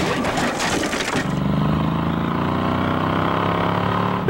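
Cartoon sound effects: a clattering crash for about the first second as the taxi cab jolts, then the cab's engine running with a steady drone.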